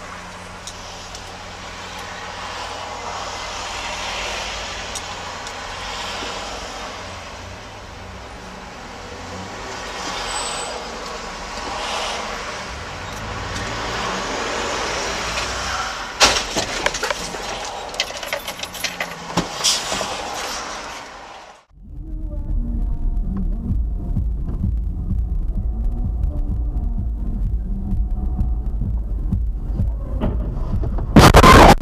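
Road vehicle and traffic noise from dashcam recordings, with a run of sharp knocks and clatters about 16 to 20 seconds in. About 22 seconds in it cuts abruptly to a deep, steady rumble of a vehicle running.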